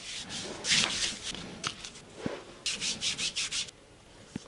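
A hand rubbing over bare skin on the leg: first a tissue wiping the shin, then black adhesive tape being smoothed onto the ankle, ending in a quick run of about six short rubbing strokes.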